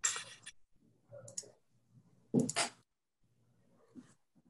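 Three short bursts of clicking and rustling noise over a video-call line, the loudest about two and a half seconds in.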